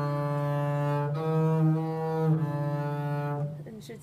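Double bass bowed in fourth position: three sustained notes in a row, changing about a second in and again past the two-second mark, the last fading out about three and a half seconds in.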